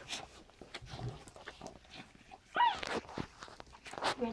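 Standard poodle dam licking her newborn puppy clean, a run of short, wet clicks and smacks. About two and a half seconds in, a brief high squeal rises and falls, typical of a newborn puppy.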